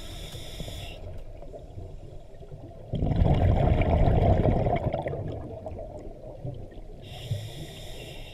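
A scuba diver breathing through a regulator underwater. A hissing inhale comes in the first second, then a loud bubbling exhale from about three to five seconds in, and another inhale near the end.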